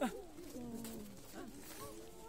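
Several people's voices vocalising and laughing without clear words, overlapping, with a sharp click right at the start.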